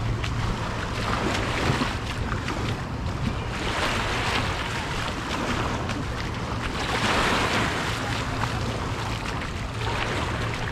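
Small waves washing onto a sandy shore, the surf swelling twice, about four and seven seconds in, over a low steady hum.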